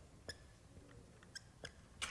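Faint squeaks of a marker writing on flip-chart paper, a few short strokes over low room tone.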